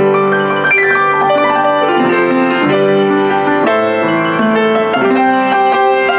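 Rogers upright piano from about 1975, played with its top lid closed: sustained chords and a melody, the harmony changing every second or so.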